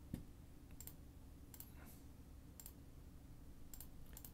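Faint computer mouse clicks, about one a second, over a low steady room hum.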